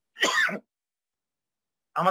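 A man clears his throat once, a short burst of about half a second, behind his hand.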